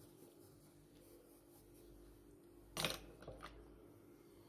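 Faint soft brushing of a bristle powder brush over graphite on paper, blending the shading in, over a low steady hum. A short, sharp rustle about three seconds in, with a couple of smaller ones after it.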